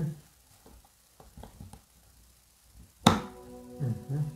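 Light clicks and taps of plastic being handled, then about three seconds in a sharp click from the button on top of an izybaby portable bottle warmer, followed at once by a steady electronic chime of several held tones as the warmer switches on to heat.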